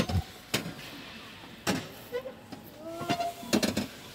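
Scattered sharp knocks and clicks, one about half a second in, one near the middle and a quick cluster near the end, over faint fragments of people's voices.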